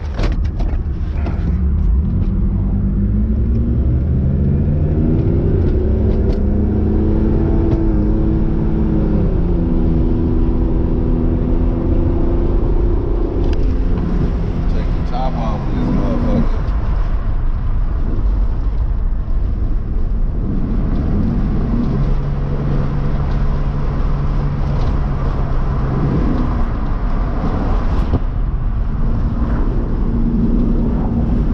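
Car engine pulling through the gears while driving, its pitch climbing, holding and dropping back several times as it accelerates and eases off, with road and wind noise underneath.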